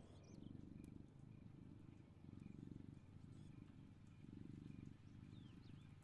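Near silence, with faint low rumbling swells that come and go about every two seconds.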